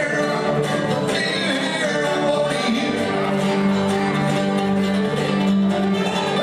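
Live country string band playing, with acoustic guitar and upright bass among the instruments.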